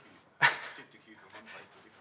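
A short, sudden vocal sound from a person about half a second in, fading quickly, followed by faint, indistinct voice sounds.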